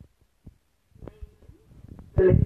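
A few faint, short low thumps and a faint, brief murmur of voice about a second in, over quiet room tone.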